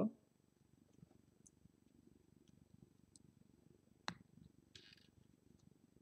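Near silence with a faint low rumble, broken about four seconds in by one sharp click of small LEGO plastic pieces snapping together, followed by a short rustle of fingers on plastic.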